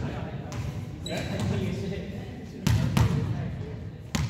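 A volleyball thudding several times in a large echoing gym, the loudest pair of thuds near the end, with voices in the background.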